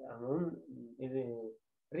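A man's voice lecturing, with drawn-out hesitant syllables for about a second and a half, then a short pause.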